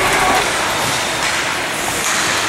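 Steady, noisy ice rink sound during a hockey game, with no distinct voices or sharp impacts.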